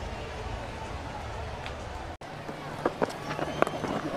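Steady field-microphone ambience of an empty cricket ground, then, after a cut, a sharp crack of a cricket bat striking the ball about three and a half seconds in, with a lighter knock just before it.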